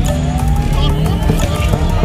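A car engine revving as the car drifts, its pitch rising early on, over background music with a heavy bass.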